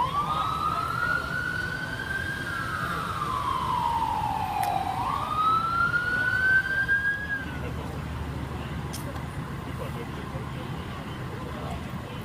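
An emergency vehicle siren sounding a slow wail. It starts up, rises, falls slowly, rises again and cuts off about seven and a half seconds in, over a low steady rumble.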